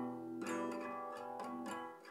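A guitar playing accompaniment between sung lines. A chord is struck about half a second in and left to ring, fading near the end.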